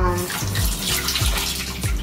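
A steady, watery hiss, heard over the low regular thump of a background beat.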